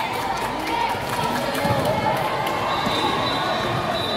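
Spectators shouting and chattering in a large gym during a volleyball rally, with sharp smacks of the ball being hit and striking the hard court floor.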